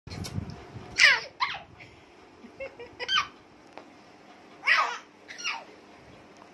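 A baby's high-pitched squeals: about five short cries, each falling steeply in pitch.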